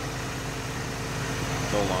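A 1985 Oldsmobile Delta 88's engine idling steadily.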